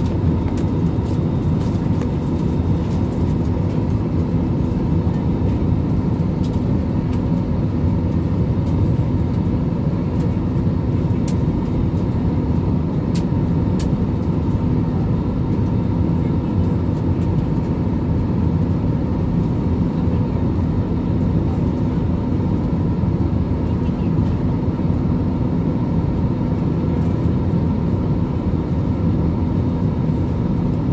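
Steady airliner cabin drone of engines and airflow, with a low hum and a fainter higher whine held throughout.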